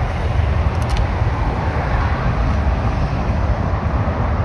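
Road traffic noise: a steady low rumble of passing vehicles, with a couple of faint clicks a little under a second in.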